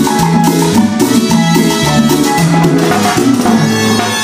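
Live cumbia band playing, with a steady, repeating bass line and percussion beat under keyboard and other instruments.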